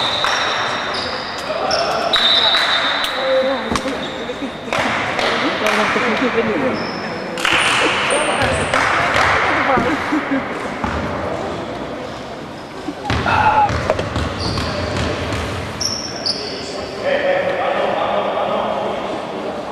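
A basketball bouncing on a wooden court, sharp knocks at irregular intervals, with voices of players and spectators in the sports hall around it.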